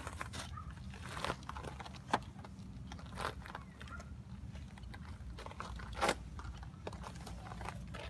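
Cloth towel rubbing and scuffing around a window's seals and frame as it is wiped dry, in irregular strokes with a few sharper ones, over a low steady hum.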